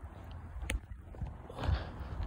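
Footsteps on asphalt with handling bumps and rumble from a hand-held phone, and one sharp click less than a second in.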